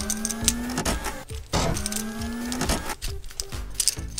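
Small clicks and snaps of a plastic Transformers Legion class Barricade figure's parts being flipped and folded by hand. Background music runs underneath, with two long, slowly rising notes.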